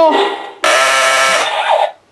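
Electronic alarm-like buzz from the Imaginext Battle Rover toy's built-in speaker, part of its shuttle-launch sound effects. It starts suddenly about half a second in, holds steady for about a second, then cuts off.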